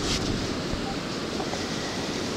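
Surf washing up over wet sand, with wind buffeting the microphone in a steady noise.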